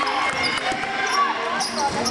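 A basketball game on a hardwood gym court: the ball bouncing as it is dribbled, short sneaker squeaks and players' voices.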